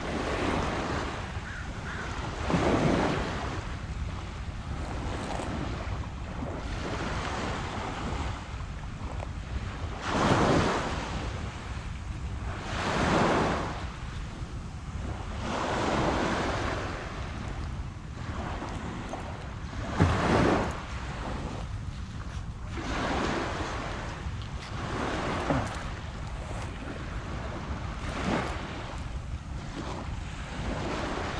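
Small waves washing onto a pebble beach, a swell of surf every few seconds, over a steady low rumble of wind on the microphone.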